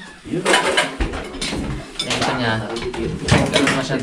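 Several people talking and calling out at once, overlapping voices of a group gathered around a table.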